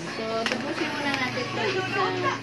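Speech from a loud television playing in the room, with a couple of sharp clicks about half a second and a second in.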